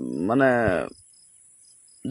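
Crickets chirping in a steady high-pitched trill. A man's voice is heard over it for about the first second, then the insect sound carries on alone.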